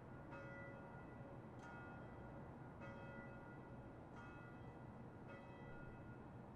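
Faint bell strokes, five of them about one every 1.2 seconds, each ringing on briefly before the next.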